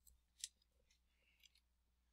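Near silence: faint room tone with a few brief soft clicks, the clearest about half a second in.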